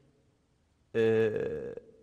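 After a near-silent pause, a man's voice holds one drawn-out vowel for about a second, steady in pitch, a mid-sentence hesitation sound.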